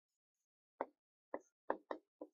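Whiteboard marker tapping and striking the board as characters are written: four short taps, the first about a second in, the last three in quick succession near the end.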